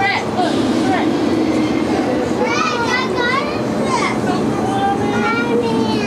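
Street traffic with a car driving past in the first couple of seconds, then high-pitched children's voices chattering and calling out over the traffic noise.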